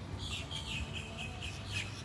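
A bird chirping, a quick run of short, evenly spaced chirps that fades out after about a second and a half, over a low background rumble.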